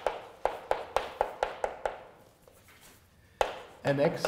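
Chalk writing on a blackboard: a quick run of sharp taps over the first two seconds, a pause, then one more tap about three and a half seconds in.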